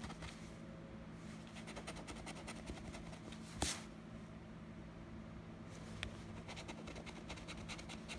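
A coin scraping the coating off a paper scratch-off lottery ticket in quick, short strokes. The scratching pauses in the middle, and there is a single sharp click a little past halfway, over a faint steady low hum.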